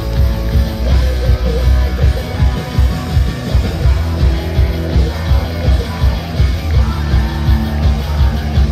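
Live hard rock band playing loud: distorted electric guitars over drums, with a steady driving beat of about two pulses a second.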